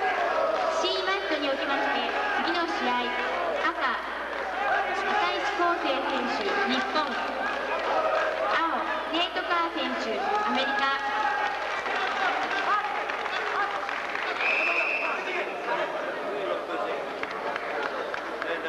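Crowd chatter in an arena: many voices talking at once, none clear, the loudest thing throughout. A brief high steady tone sounds about fourteen seconds in.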